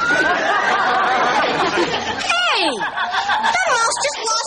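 Cartoon soundtrack heard in a TV sitcom clip: squeaky high-pitched sounds that slide up and down, with a long falling glide about two seconds in, under snickering laughter.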